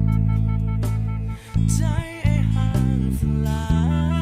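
Pop song with a singer and drums, with a Specter Euro 5LX five-string electric bass played along. The bass holds long low notes separated by short breaks, about a second and a half in and again near two seconds.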